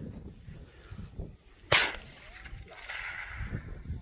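A single rifle shot a little under two seconds in: one sharp crack with a short echo trailing off.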